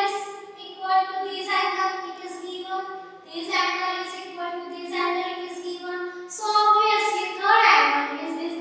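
Speech only: a girl's voice explaining, with long held syllables.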